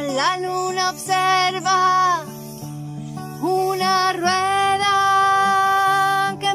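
A woman singing long held notes that slide up into pitch, accompanied by a strummed acoustic guitar. The voice drops out for about a second near the middle, leaving the guitar alone, then comes back on a rising note held to the end.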